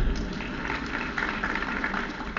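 A lecture-hall audience laughing, an irregular ripple of many voices over a steady low recording hum.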